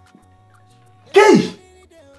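Quiet background music with steady held tones, and a little over a second in, one short loud vocal outburst from a man, falling in pitch.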